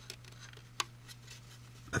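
A number 16 hobby knife blade nicking and scraping at a moulded door handle on a plastic model car body: faint scattered ticks, with one sharper click a little under a second in.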